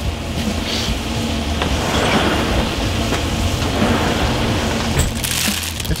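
Thin strips of tri-tip steak sizzling in a cast-iron skillet on a hot griddle: a steady crackling fizz.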